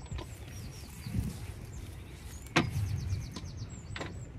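A sharp knock about two and a half seconds in, over a low rumble and a few faint high chirps.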